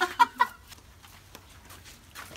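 A man's short burst of laughter, three quick pitched 'ha' pulses in the first half second, then fading to quiet.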